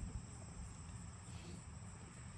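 Crickets trilling steadily in a summer grass field, a continuous high-pitched chirring, with a low rumble underneath.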